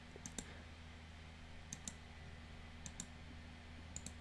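Computer mouse clicking at a desk: four quick pairs of clicks, roughly one pair a second, over a low steady hum.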